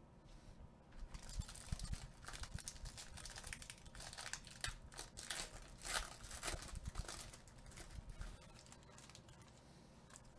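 Faint rustling and crinkling of trading cards being shuffled and slid through nitrile-gloved hands, with small clicks and scrapes, starting about a second in and dying away near the end.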